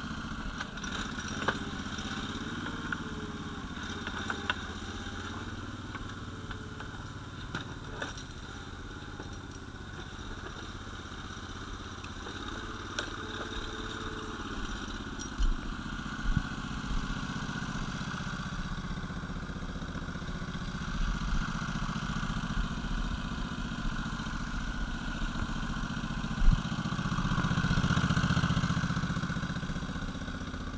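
The engine of a Kapsen 18 RC remote-controlled forest skidder running steadily and swelling louder near the end. A few sharp knocks and clicks sound over it.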